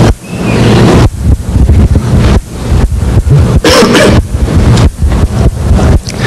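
Loud, rough low rumble with hiss on the recording, surging and dropping unevenly, typical of microphone noise on an old conference tape.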